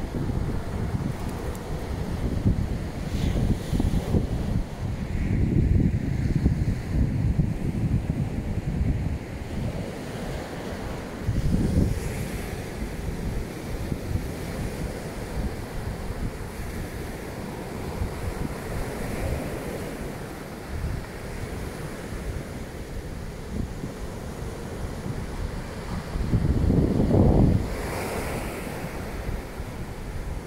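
Surf breaking and washing up a sand-and-shingle beach, with wind rumbling on the microphone in gusts, the strongest gust near the end.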